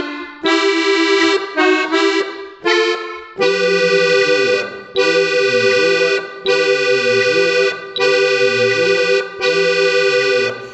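Piano accordion playing a slow melody in two-note chords in thirds: a few short chords, then the same chord sounded five times, each held for just over a second with short breaks between.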